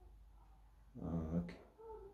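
Quiet room tone, then about a second in a short wordless hum from a man's voice, followed by a single click.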